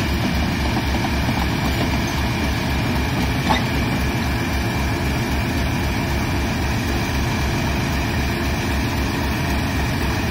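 Class 37 diesel locomotive's English Electric V12 engine idling with a steady, regular low throb as the locomotive buffers up to the coaches, with a single short knock about three and a half seconds in.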